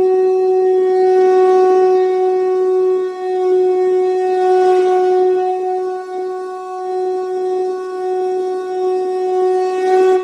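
A conch shell (shankh) blown in one long, steady note, swelling slightly in loudness as it is held.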